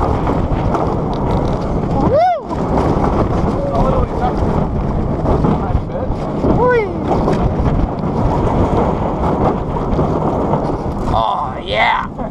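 Wind rushing over the microphone and the roller coaster train running along its steel track at speed, a loud continuous rumble. A rider lets out a short whoop about two seconds in and again near seven seconds.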